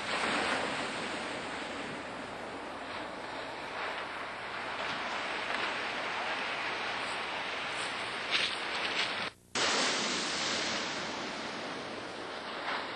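Ocean surf washing onto the shore, with wind on the microphone, as a steady rush. The sound cuts out abruptly for a fraction of a second a little over nine seconds in, then returns.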